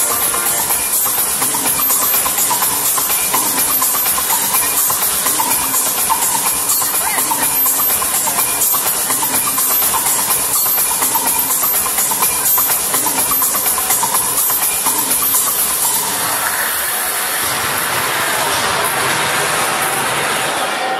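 Electronic music soundtrack made of a dense, loud hissing and fast rattling noise texture with a faint held tone underneath. About sixteen seconds in it smooths into a softer hiss and begins to thin out.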